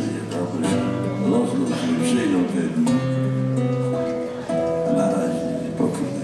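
Acoustic guitar playing an instrumental passage of a sea shanty, chords strummed and picked, with held low notes beneath.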